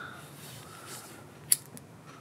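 A cigarette lighter struck once about one and a half seconds in: a sharp click, with a fainter click just after.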